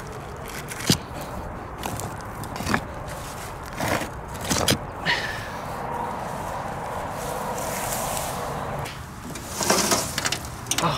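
Stones being gripped and shifted by hand, with about four sharp knocks and scrapes of rock on rock, followed by rustling through wet grass.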